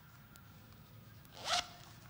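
A single brief rasping rustle, about one and a half seconds in, over quiet room tone in a silent meditation hall.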